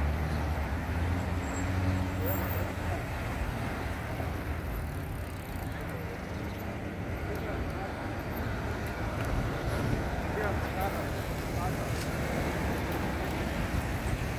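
Steady city traffic noise at a busy intersection, with car engines running low as vehicles drive through, heaviest in the first few seconds.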